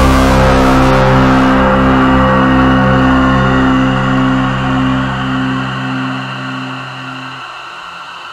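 A loud, low, steady drone with a regular pulse of about two beats a second, thinning out and fading away over the last two seconds.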